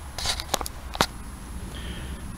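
Footsteps and rustling on grass: a few soft crackles early on and one sharp click about a second in.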